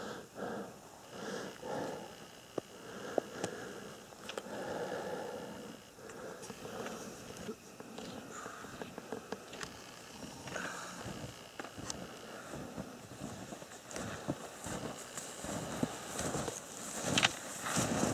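Snowshoe footsteps crunching unevenly through deep snow, with scattered sharp clicks and rustles.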